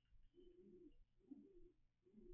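Faint, short, low-pitched animal calls, several in a row.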